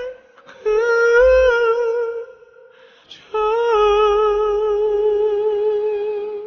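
A man's high tenor voice singing a wordless melody with no backing: a short phrase, then a long held high note with vibrato that fades out just after the end.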